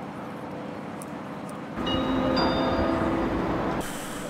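Steady railway-station background hum, then about two seconds in a public-address chime starts: several held tones, one note changing partway through, ringing for about two seconds and ending just before a platform announcement.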